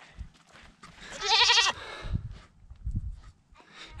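A goat bleating once, a loud quavering call of under a second starting about a second in, followed by a few soft low thumps.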